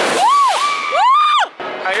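Children whooping outdoors: two high cries, each rising and then falling in pitch, one after the other.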